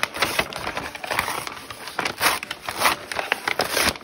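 Brown paper grocery bag crinkling and rustling in irregular crackly bursts as hands pull it open.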